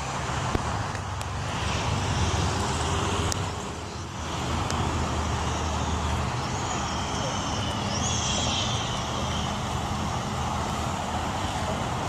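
A car engine idling with a steady low rumble that shifts about six seconds in, over outdoor traffic noise and faint voices.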